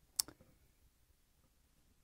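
A single short, sharp click a moment in, followed by quiet room tone.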